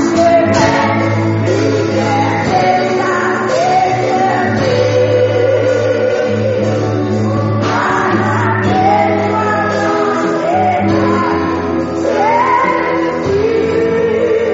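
Gospel-style worship song: singing with long held, wavering notes over instrumental accompaniment with a steady low bass note.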